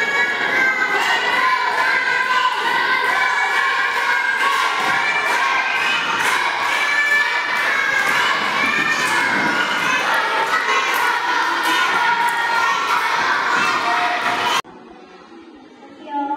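A crowd of young children shouting and cheering together, loud and continuous, which cuts off abruptly about a second before the end, leaving a much quieter room.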